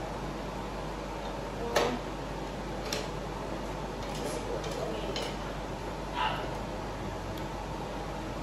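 Kitchen utensils being handled: one sharp clack about two seconds in, then a few lighter clicks and knocks, over a steady low background hiss.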